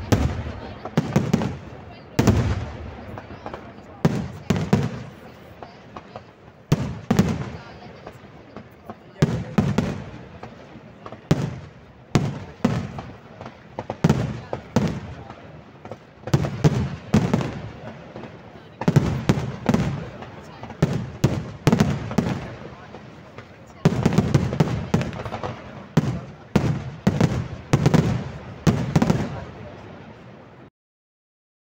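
Aerial fireworks display: shells bursting in a long string of sharp bangs in irregular volleys, at times several a second. The bangs come thickest over the last six seconds.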